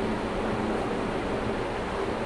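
Steady background hiss with a faint low hum, even throughout, in a small room between spoken sentences.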